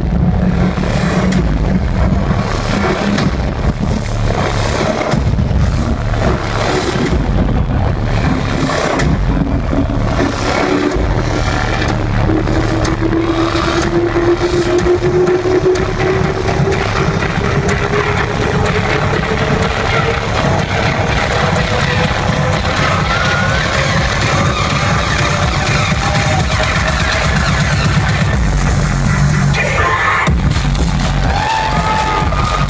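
Loud dubstep played over a concert sound system and recorded from within the crowd. It is a build-up: a pulsing beat early on, then a long synth riser climbing steadily in pitch through the second half, leading into the drop right at the end.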